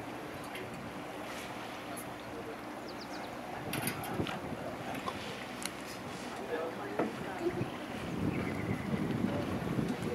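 A river cruise boat's engine running steadily under wind noise and rushing water.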